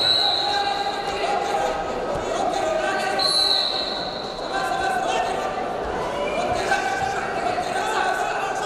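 Raised voices shouting across a large hall, with a few dull thuds of bodies on the wrestling mat.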